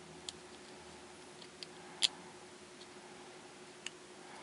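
A few small, sharp clicks as metal lens parts are turned and fitted together by hand, the loudest about halfway through, over a faint steady hum.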